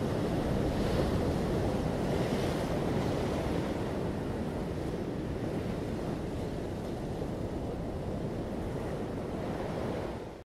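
Ocean surf: a steady rush of breaking waves, with a couple of brighter swells in the first few seconds, then settling a little quieter.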